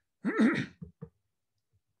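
A man's short, breathy vocal sound, not a word, with a rise and fall in pitch, followed by two faint clicks.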